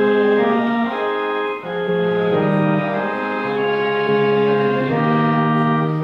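Organ playing a hymn in sustained chords, the notes moving in steps every second or so.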